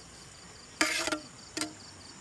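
Crickets chirping in a steady, pulsing trill, with two short, loud clanks from a frying pan being handled, about a second in and again just past the middle.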